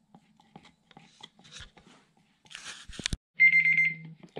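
Faint scraping of a wooden stick stirring epoxy resin in a plastic cup, then a couple of sharp knocks about three seconds in. Near the end a smartphone timer alarm goes off with a loud, steady high tone, marking the end of the three-and-a-half-minute mixing time.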